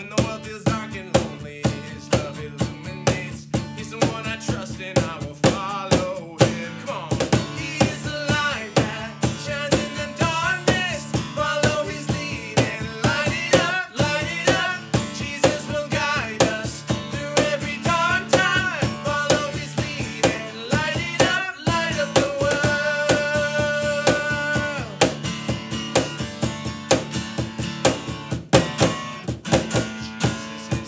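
Two men singing an upbeat children's worship song to a strummed steel-string acoustic guitar, with a steady beat of about two to three strokes a second.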